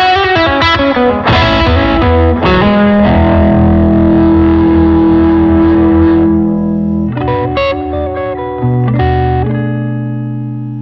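Distorted electric guitar played through the overdrive channel of a Blackstar St. James 6L6 valve combo amp. A quick run of notes comes first, then a chord is held ringing for about four seconds, then a few shorter notes and a low note held near the end.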